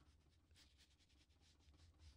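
Near silence, with faint light strokes of a paintbrush on watercolor paper.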